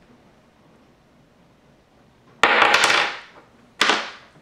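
An AA alkaline battery clattering on a hard desk top: a rattling run of quick knocks about two and a half seconds in as it bounces, then a single shorter clack near the end. In this drop test, a bounce like this marks the battery as dead.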